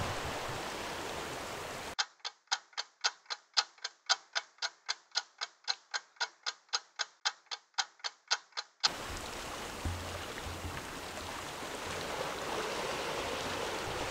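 A ticking clock sound effect, about four ticks a second for roughly seven seconds, marking the 30 seconds the jig takes to sink to the sea bottom. Steady outdoor wind and sea hiss drops out while it plays and comes back afterwards.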